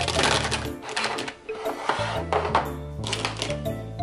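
Background music, with plastic pens and highlighters clattering and clicking as they are laid into a clear plastic storage box, in spells during the first second and again around two seconds in.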